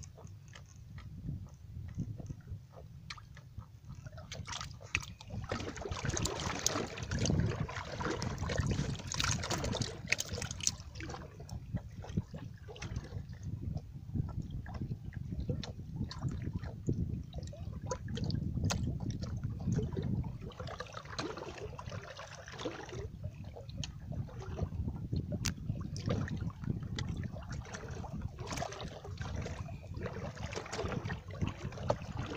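Water sloshing and lapping unevenly, with scattered small knocks and clicks. It swells louder a few times.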